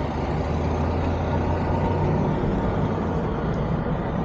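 Engine and tyre noise heard from inside a slowly moving vehicle: a steady low drone with road hiss over it.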